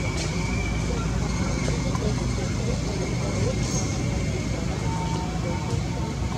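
Steady outdoor background noise: a continuous low rumble with faint indistinct voices and a few faint chirps, and no clear monkey calls.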